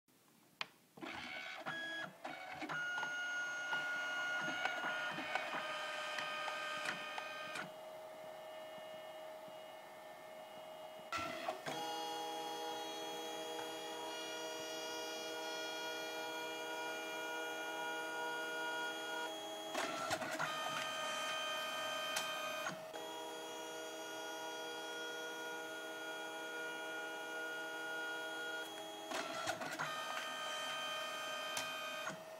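Compact dye-sublimation photo printer printing a card colour by colour: a steady motor whine as the paper is drawn through each pass. It is broken by clicks at the start and several sharp clunks where the mechanism changes over between colour passes.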